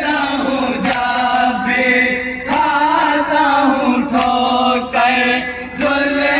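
Men chanting a nawha, a Shia lament, in unison, with a sharp collective chest-beat (matam) landing about every second and a half.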